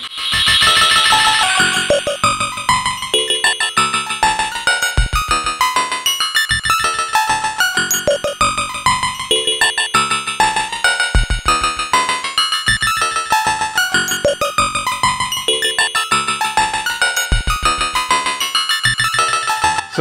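Synton Fenix II modular synthesizer playing a fast sequencer line of short pitched notes through its bucket-brigade (BBD) delay, with negative voltage on the delay-time CV input for longer echoes. A bright high-pitched swell stands out in the first two seconds.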